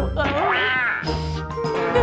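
A young woman's exaggerated sobbing wail, rising in pitch about half a second in, over light background music with jingling bells.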